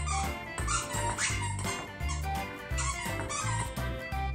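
A squeaky plush dog toy squeaking several times as a golden retriever puppy chews it, under background music.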